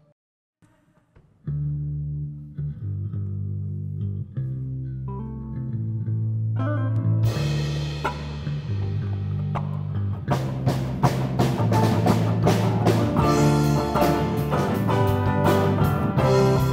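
A live rock band playing the instrumental opening of a song on electric guitar, bass, piano and drums. After about a second and a half of silence the bass and chords start, the sound grows brighter and fuller about seven seconds in, and the drums come in with a steady beat about ten seconds in.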